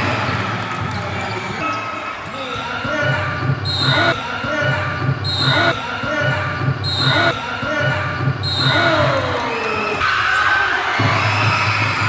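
Live youth basketball game in a gym: a basketball bouncing on the hardwood, sneakers squeaking, and players' voices, all echoing in the large hall.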